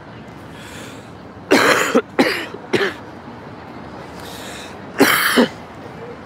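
A person coughing close by: three harsh coughs in quick succession about a second and a half in, then one more near the end.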